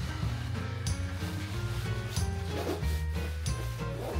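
Background music: held bass notes under a light melody, with soft, evenly spaced percussive hits.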